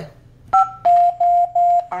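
2GIG alarm panel beeping as away arming is selected: one short higher two-pitch beep about half a second in, then three even lower beeps in a row, the panel confirming it has started arming away.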